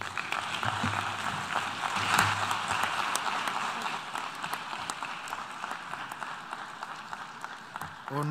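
Audience applauding, loudest two to three seconds in and then slowly fading.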